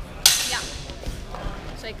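Steel longswords clashing: one sharp strike about a quarter second in with a bright ringing tail that fades over about half a second. Shouted voices come near the end.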